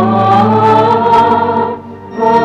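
Choir singing Christian music: held notes from several voices, with a brief break in the phrase near the end.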